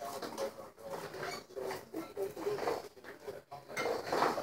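Faint, irregular handling sounds of a metal spoon and a plastic squeeze bottle of mustard being worked over plates on a table.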